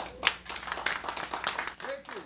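Audience applause at the end of a live performance: many overlapping hand claps, with a voice or two calling out.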